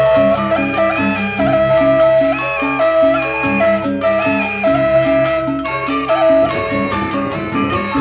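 Sasak gendang beleq gamelan music: a row of bossed kettle gongs in a carved frame, struck with sticks by several players in quick interlocking repeated figures over a steadily pulsing lower gong pattern.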